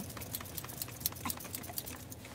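Low steady rumble of a vehicle cabin with faint, irregular light clicks and ticks scattered through it.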